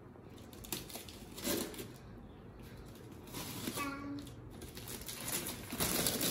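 Paper and clear plastic sheeting rustling and crinkling in short bursts as the paperwork is pulled off the lid of a styrofoam box, louder near the end. A brief pitched squeak about four seconds in.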